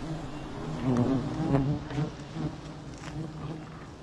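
Honeybees buzzing around their exposed wild comb as the comb is handled: a steady low drone.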